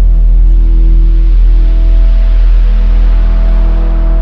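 Dramatic background music score: a loud, sustained low drone under long held chords, the harmony shifting about a second and a half in.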